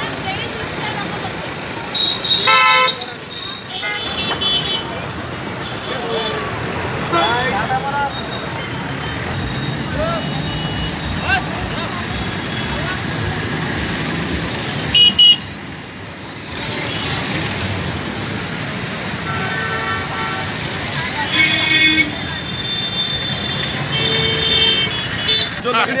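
Road traffic running steadily, with motorcycles and auto-rickshaws passing, and vehicle horns tooting several times. The horns come thickest in the last few seconds.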